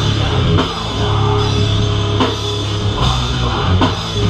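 Live heavy rock band playing: electric guitar and bass guitar over a drum kit, with several sharp accented hits through the passage and no clear vocals.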